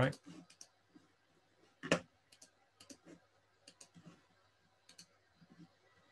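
Scattered clicks of a computer mouse being operated, most of them faint, with one louder click about two seconds in.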